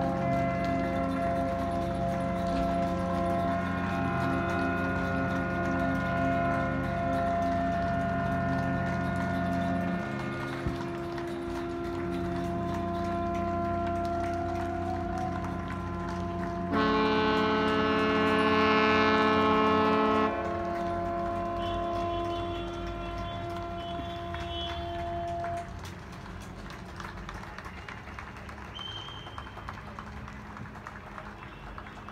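Ships' horns sounding together: several long, steady blasts overlapping as chords, with one louder blast of about three seconds just past the middle. The last of them stops about four seconds before the end.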